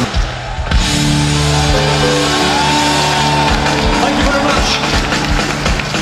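Live band music with a steady drum beat and held notes, changing abruptly just after the start.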